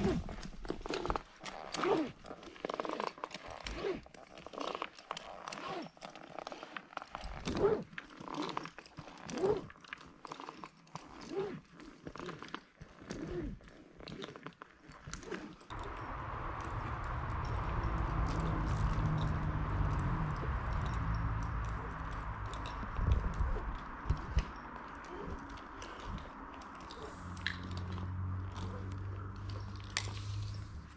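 A tree climber breathing hard, about once a second, with sharp clicks and rubbing from the knee and foot rope ascenders and the climbing rope as he rope walks up the line. About halfway through, the sound changes to a steady hiss with a low hum.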